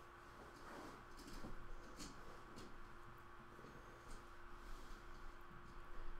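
Faint handling noises: a few soft clicks and rustles over a steady low hum, otherwise close to silence.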